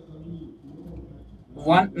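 A pause in speech: low room hum with a faint low murmur. A man's voice starts again near the end.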